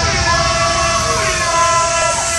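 Drum and bass intro played through a club sound system: stacked, held siren-like synth tones with a sliding pitch, the deep bass pulled back.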